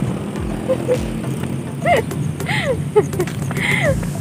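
A woman's voice making a few short, sliding vocal sounds, no clear words, from about two seconds in, over a steady low background hum.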